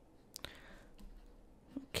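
Faint clicks while digital handwriting is erased from a screen, one sharper click about half a second in and a few softer ticks after it.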